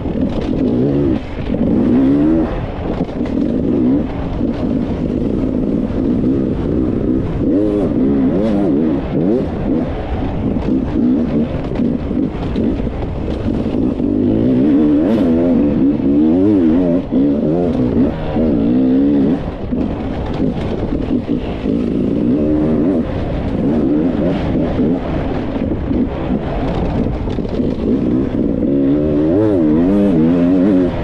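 Enduro dirt bike engine revving up and down without a break as it is ridden along a rocky dirt trail, its pitch rising and falling with the throttle.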